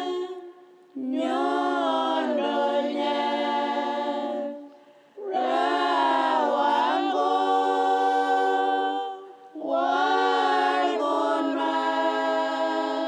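A group of voices singing together unaccompanied, in three long phrases with short pauses for breath between them.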